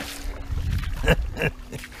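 Two short chuckles from a person close to the microphone about a second in, over a low rumble of wind on the microphone.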